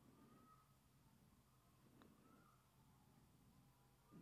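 Near silence: room tone, with one faint click about two seconds in.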